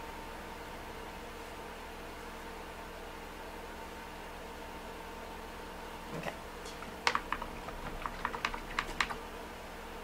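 Faint room tone with a steady hum, then from about seven seconds in a quick run of about a dozen light clicks and taps over two seconds as painting tools and supplies are handled at the work table.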